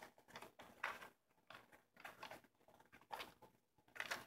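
Faint paper rustles and soft taps of handmade journal pages being turned by hand, a few brief ones, the clearest about a second in and just after three seconds.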